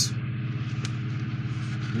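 A steady low machine hum, like a motor or fan running, with a faint tick a little under a second in.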